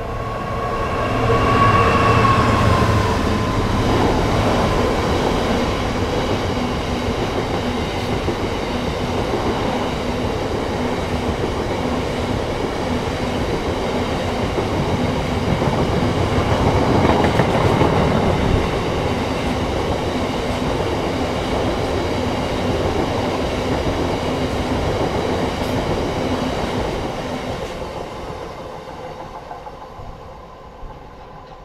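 Freight train hauled by a Class 66 diesel locomotive passing close by. The locomotive is loudest a couple of seconds in, with a brief high tone. Then comes the long steady rumble and clatter of the hopper wagons, fading near the end as the train draws away.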